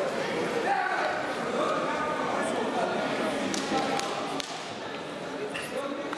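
Indistinct voices of several people talking in a large, echoing sports hall, with a few short knocks in between.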